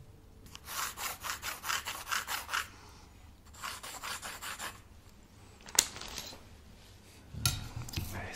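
Pencil scratching across a spiral notepad in quick back-and-forth strokes, about four a second: one run of about two seconds, then a shorter one. A single sharp click follows a second later.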